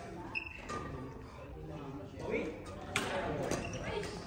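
Badminton racket hitting a shuttlecock twice, with sharp pops about three seconds in and half a second later, echoing in a large hall, amid players' voices.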